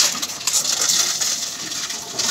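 Reverse vending machine taking in empty plastic deposit bottles: a dense clatter and rattle of plastic as the bottles go into the opening and are carried off inside.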